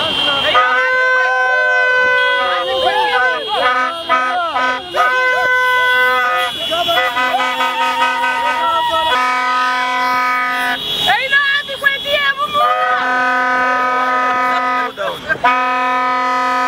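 Horns sounding in repeated long, steady blasts of one note each, a higher-pitched horn in the first half and a lower one from about nine seconds in, with crowd voices shouting over them.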